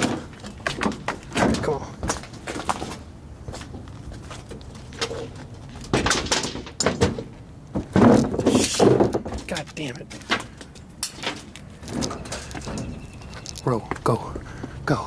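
Footsteps and scrambling over broken plastic stadium seats and concrete steps: irregular knocks, scuffs and clatters, with heavy breathing from the climb.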